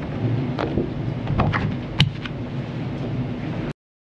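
Papers rustling and being handled at a podium microphone, with a few sharp clicks, the loudest about halfway through. The sound cuts off suddenly near the end.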